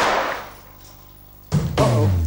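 A single 9 mm pistol shot fired into a water-filled wooden barrel: one sharp report that rings out and fades over about half a second. Background music comes in about one and a half seconds later.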